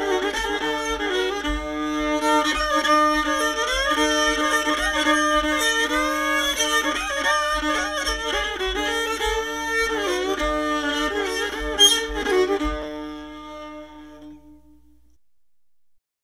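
Old-time string band music: fiddle over a steady drone, with banjo accompaniment. The tune comes to its final notes about 13 seconds in and rings out to silence.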